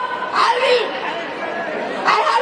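Speech: a woman talking into a microphone, with chatter from the crowd around her.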